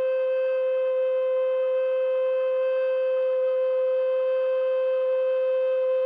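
A recorder holding one long note, steady in pitch and loudness, with no vibrato.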